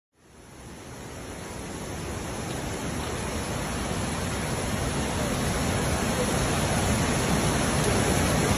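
Steady rushing noise of a fast flood torrent, with no distinct tones or impacts, fading in at the start and slowly growing louder.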